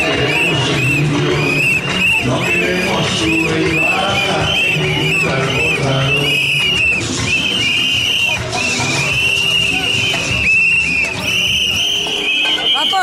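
Crowd of marching demonstrators blowing many whistles in short shrill blasts, several a second, over the steady din of crowd voices.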